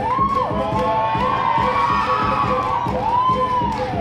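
Audience cheering with several long high-pitched whoops, one near the start and another near the end, over hip-hop dance music with a steady beat.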